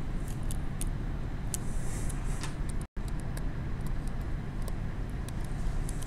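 Steady low hum of room noise with scattered light clicks and short scratches from a stylus writing on a tablet screen. The sound cuts out completely for a moment about three seconds in.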